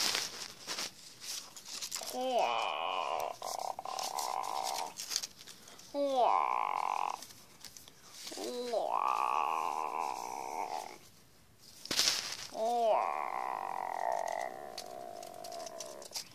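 Four drawn-out monster roars, each two to three seconds long and opening with a quick wavering rise before holding a steady, piercing pitch, voiced for paper-cutout monsters fighting. Between the roars come the rustles and clicks of paper cutouts being shaken about.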